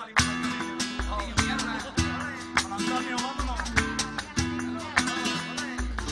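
Flamenco-style guitar music starting abruptly just after the start, with sharply strummed, strongly accented chords over deep bass notes.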